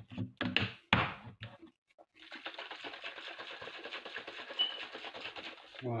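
A few knocks as a plastic shaker bottle of pre-workout drink is handled, then the bottle being shaken hard for about three and a half seconds, its contents rattling and sloshing rapidly.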